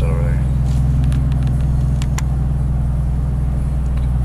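Steady low engine and road rumble inside the cabin of a moving truck.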